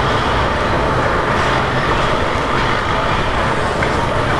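Steady, loud noisy rumble with a hiss on top and no clear voice or rhythm, unbroken throughout.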